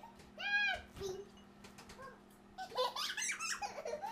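A young child's high-pitched squeal, followed by giggling and laughter near the end, over a steady low hum from the microwave running.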